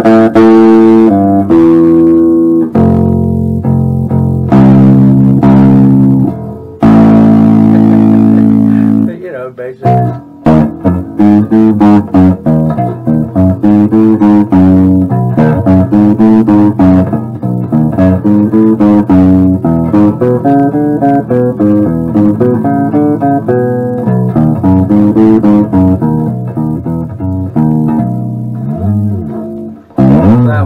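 Four-string electric wine box bass with light flatwound strings, played through an amp: long held notes for the first several seconds, then a busier run of quicker notes with sliding pitches. The playing is recorded too loud for the room, so it comes out with a fuzz-pedal-like distortion that is not the bass's own tone.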